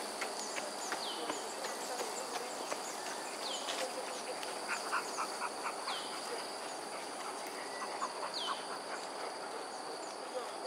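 A steady, high-pitched insect drone, with a bird repeating a short, falling whistle about every two and a half seconds, five times, and scattered soft ticks.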